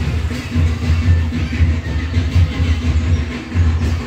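Music with a strong bass pulsing in a steady beat.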